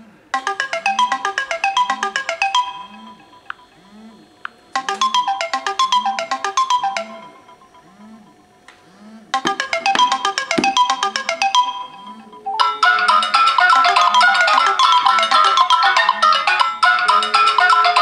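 Samsung phone alarm tone playing a short melody of quick notes in three phrases with pauses between. About two-thirds of the way through, a louder, continuous ringtone joins it from an original Samsung Galaxy S ringing with an incoming call.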